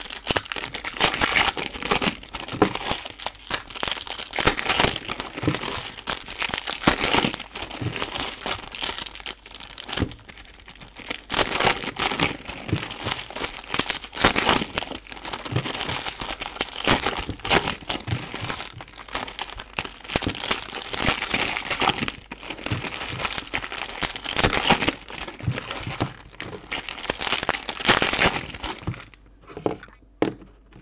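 Foil trading-card pack wrappers being torn open and crinkled by hand, a continuous run of quick, sharp crackles that eases off near the end.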